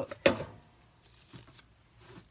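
Wooden soap loaf mold full of freshly poured soap batter knocked sharply once against the countertop just after the start, then a faint second knock about halfway through: tapping to bring air bubbles from whisking up to the surface.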